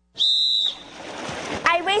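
A single whistle blast, one steady high note lasting about half a second, followed by crowd noise with voices rising toward the end.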